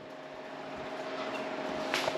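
Room noise: a faint steady hum under a hiss that grows gradually louder.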